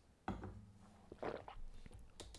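Faint handling noises of tarot cards on a table: a light tap about a quarter second in, then a short sliding scrape of a card about a second later, with a few small ticks.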